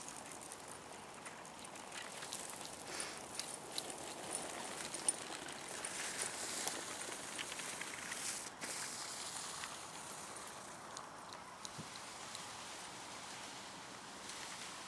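Mountainboard wheels rolling fast over grass and crusted snow patches: a steady rushing noise with many scattered clicks and crunches, loudest about halfway through.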